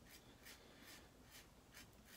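Faint scraping of a Karve aluminum safety razor cutting stubble through lather on the cheek, in quick short strokes several times a second.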